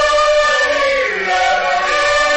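A vocal trio singing together in Moroccan song, holding long notes that glide gently up and down.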